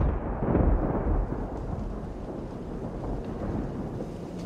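Thunder rumbling low, loudest in the first second and then slowly dying away.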